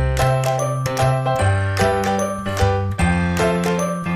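Background music: a light, cheerful tune with chiming bell-like notes over a bass line and a steady beat.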